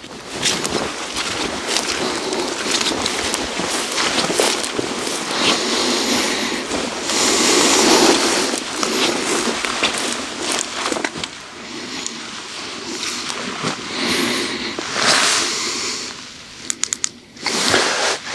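Crunching and rustling of footsteps through dry marsh grass, swelling and fading, with a few sharp clicks near the end.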